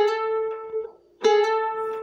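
Charango plucked twice, the same A note about a second apart, each ringing and fading; the first is slid up into the A from a G-sharp with the open second string sounding.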